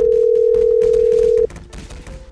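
Telephone ringback tone as an outgoing call rings through: one steady beep about a second and a half long that cuts off sharply.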